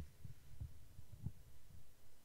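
Faint, irregular low thuds, several a second, over a low hum, with no speech.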